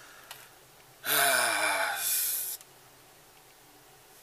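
A man's long, heavy voiced exhalation, a sigh or groan falling in pitch, about a second in and lasting about a second and a half, the breath rushing out in two pushes.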